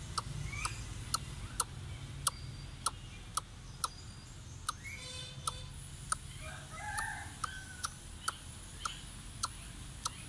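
A young greater coucal giving a few short calls: a rising note about five seconds in and a cluster of chirps a couple of seconds later. Under them runs a sharp, even ticking about twice a second.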